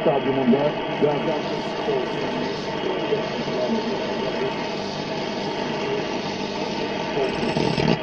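A shortwave broadcast picked up by a single-tube 6J1 SDR receiver powered from only 3.7 V: a Turkish-speaking voice, fairly clear in the first second, then faint and buried in steady static hiss. The weak, noisy reception is typical of the low 3.7 V supply; the radio works better at 6.3 V.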